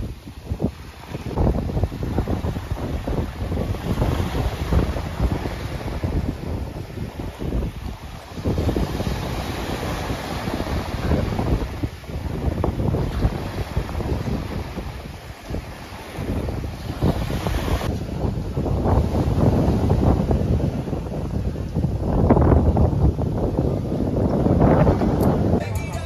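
Wind buffeting the phone's microphone in uneven gusts over small waves washing onto a sandy shore.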